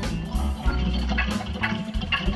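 Live blues band playing: a Hammond B3 organ holding sustained chords over electric bass and drums, with regular drum hits.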